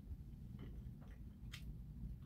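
Faint eating sounds: chewing and a few small clicks of chopsticks against plastic food trays, the loudest about one and a half seconds in, over a low steady room hum.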